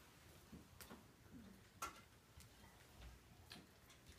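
Near silence: room tone with a few faint, irregularly spaced clicks.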